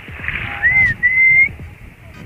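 Two loud whistled notes: a short one that rises and falls about half a second in, then a longer one held and rising slightly, over a steady background hiss.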